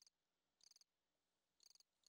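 Very faint cricket chirps, a few short high trills spaced unevenly, over near silence.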